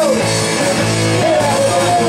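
Live rock and roll band playing loud and steady: electric guitars over a drum kit, with a wavering melody line riding on top.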